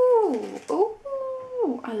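An animal calling twice, each call held on one pitch and then falling away, the second one overlapped by a woman starting to talk near the end.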